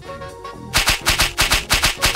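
A rapid, machine-gun-like burst of shots at about seven a second, starting about three-quarters of a second in, over light background music: an edited-in comedy sound effect.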